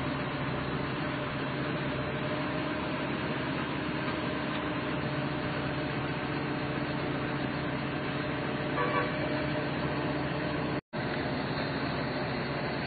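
A steady engine hum under a constant rushing noise. It cuts out for an instant near the end.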